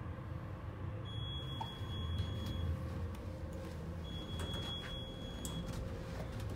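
Kone Ecospace traction elevator car travelling, heard from inside the cab: a steady low rumble with a faint steady hum.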